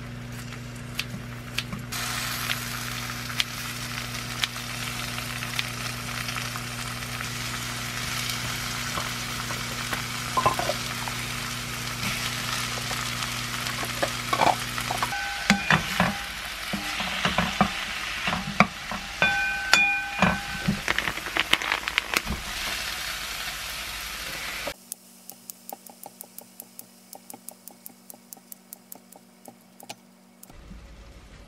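Chopped kimchi and mushrooms frying in olive oil in a white frying pan, a steady sizzle, with a wooden spatula stirring and knocking against the pan from about halfway. A steady low hum runs under the first half; near the end the sizzle cuts off suddenly, leaving a run of faint quick clicks, about four a second.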